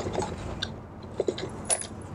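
Hands tying a thin ribbon on a handmade journal's spine, with a few light, scattered clicks and taps as the ribbon and book are handled.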